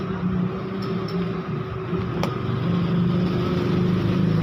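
A steady low mechanical hum, engine-like, with a single sharp click a little over two seconds in.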